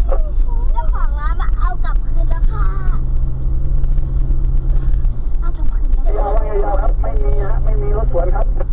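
Steady low rumble of a car's engine and tyres heard from inside the cabin while driving at road speed, with a steady engine hum.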